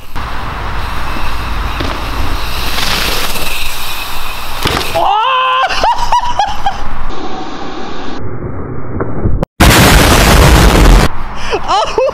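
A mountain bike ridden fast along a wet dirt trail: loud wind buffeting on the microphone over tyre noise, with a short gliding pitched sound about five seconds in and a very loud rush of noise from about ten seconds in.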